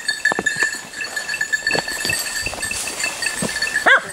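A small bell rings continuously on one high tone, typical of a hunting dog's collar bell moving through the brush during a driven hunt. A few short cracks of brush sound early on.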